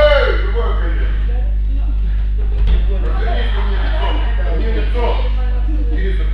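Indistinct voices talking in a large hall over a steady low hum, with one dull thump a little before the middle.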